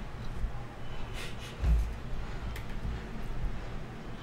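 Handling noise at a desk: irregular low bumps, one louder dull thump a little past the middle, and a few light clicks over steady room noise.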